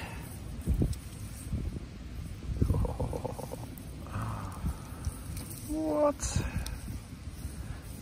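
Wind buffeting the microphone as a low rumble, with a few brief, indistinct voice sounds about three and six seconds in.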